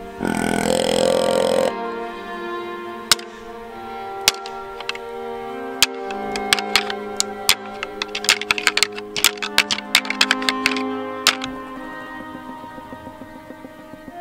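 A deer grunt tube blown once, a buck-like grunt of about a second and a half, followed by a pair of deer antlers being rattled together: scattered clicks that come thick and fast for a few seconds, then stop. Grunting and rattling like this imitate bucks sparring, to draw a buck in. Music plays underneath.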